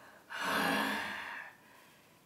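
A man's breathy voiced 'aah', a gasp-like sigh lasting about a second, starting a moment into the clip.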